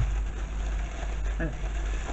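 A steady low hum with a haze of background noise, a soft click at the start, and one short spoken word near the end.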